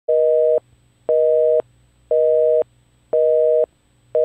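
North American telephone busy signal: a steady two-tone beep sounding four times, half a second on and half a second off.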